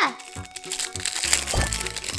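Thin plastic wrapper crinkling in quick small clicks as fingers open the clear packet around a keyring, over background music.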